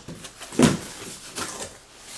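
Cardboard box flaps being opened and handled by hand: a few short scrapes and soft knocks, the loudest about half a second in.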